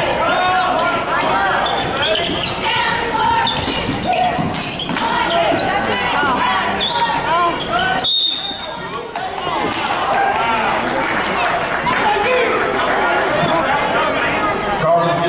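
Basketball bouncing on a hardwood gym court during a game, with spectators' voices around it in a large echoing gym. The sound briefly drops about eight seconds in.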